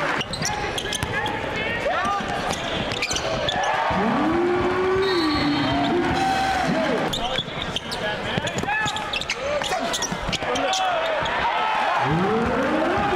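Live court sound of a basketball game in a gym: the ball bouncing on the hardwood floor in repeated knocks, sneakers squeaking, and players' and spectators' voices calling out over it.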